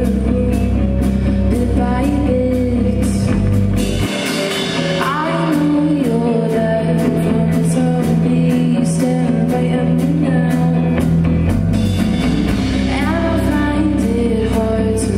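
Live rock band playing: a woman singing over electric guitars, bass guitar and a drum kit. The deep bass drops out about four seconds in and comes back near the end.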